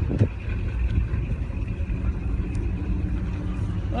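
Old pickup truck engine running steadily, a low even rumble, with wind buffeting the microphone.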